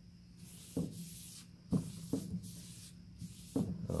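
A cloth rag wiping back and forth across a black walnut board, a scratchy hiss in several strokes with short pauses between them, and a few light knocks of the hand on the board.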